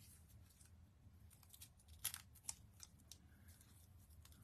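Faint clicks and light crackling of cardstock as a die-cut letter is picked loose from its sheet with a pointed tool, the clearest clicks about two seconds in.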